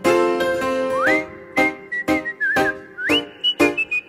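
A man whistling a melody over short, rhythmic piano chords played with one hand. The whistle slides up about a second in, holds, dips with a slight wobble, then slides up higher near three seconds.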